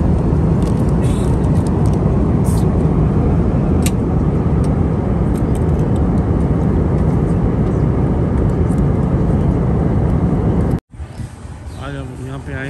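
Airliner cabin noise: a loud, steady low rumble of engines and rushing air. It cuts off abruptly about a second before the end.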